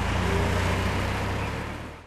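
A steady low rumble over a background hiss, fading out at the very end.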